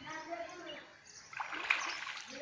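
A child splashing in pond water, a burst of splashes starting about a second and a half in.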